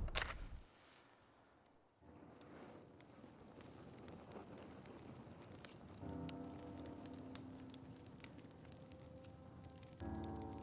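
Faint crackling and popping of a wood fire burning in a small metal fire pit. A short burst of noise at the very start dies away within a second, and soft sustained music comes in about six seconds in.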